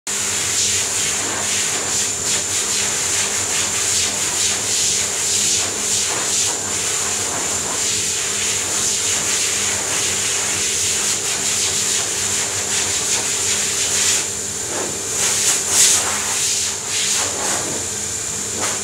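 Underwater treadmill running: a steady hum and hiss of its machinery and moving water, with water sloshing as a dog walks through it; a few louder sloshes near the end.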